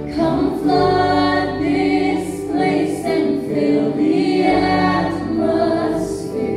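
Live praise team: male and female voices singing a slow worship song together in harmony, with band accompaniment underneath.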